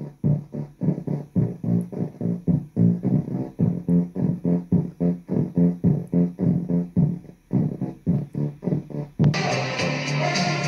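Music with a quick plucked bass-like line, about four notes a second, played through a breadboard third-order low-pass filter and LM386 amplifier into a small speaker. The highs are cut away and the low notes dominate; the filter's response is not quite right, with real instead of complex poles. Near the end the sound suddenly turns full-range and bright.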